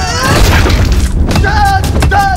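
Action-film fight soundtrack: deep booming hits and music, with shouted voices that come in again about one and a half seconds in.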